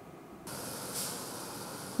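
Steady, even hiss of street traffic ambience, starting about half a second in after a brief silence.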